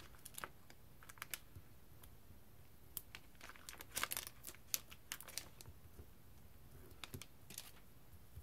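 Faint, scattered clicks and crinkles of foam adhesive dots (dimensionals) being peeled off their backing sheet and pressed onto a cardstock label, busiest in the middle.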